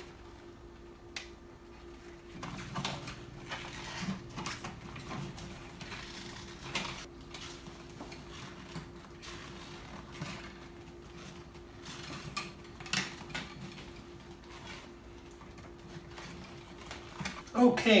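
Scattered clicks and light rustles of pliers and stiff copper house wire as the neutral conductors are twisted together and readied for a wire nut, over a faint steady hum.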